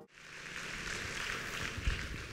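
Faint applause from an audience in a large hall, with a soft low thump near the end.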